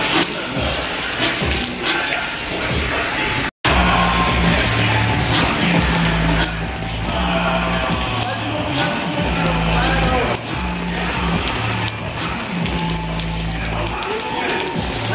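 Rap music playing back with a heavy, repeating bass line and vocals over it; there is a brief dropout about three and a half seconds in, after which the beat is louder.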